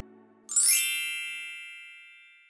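Logo-reveal chime sound effect: a short rising shimmer about half a second in, then a bright ding that rings and fades slowly.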